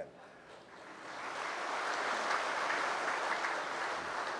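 Audience applauding, building up over the first second or so and then holding steady.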